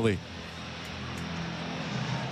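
Steady low background noise of the ballpark on the radio broadcast feed, a dull even rumble with no speech over it, slowly growing louder.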